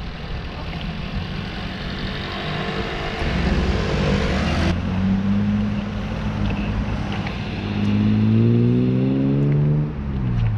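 Motor traffic heard from a moving bicycle: a vehicle engine accelerating, its pitch rising, loudest near the end, over a steady haze of wind and road noise.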